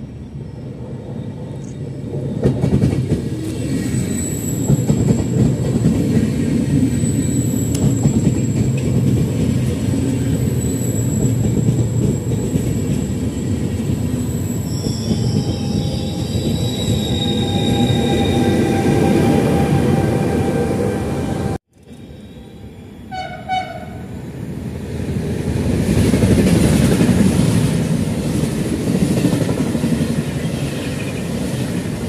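Trenitalia Vivalto double-deck regional train pulling in along the platform, its wheels rumbling loudly on the rails, with high squealing tones in the second half as it slows. After a sudden break in the sound about two thirds through, a short two-note horn sounds. Then another train of single-deck coaches rumbles past.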